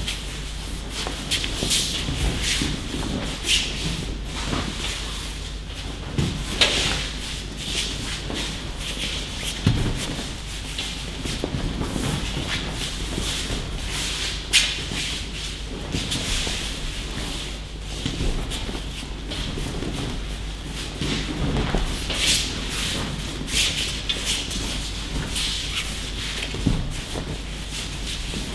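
Bare feet shuffling and sliding on tatami mats during aikido practice, with irregular thumps of partners falling onto the mats and the rustle of training uniforms, echoing in a large hall.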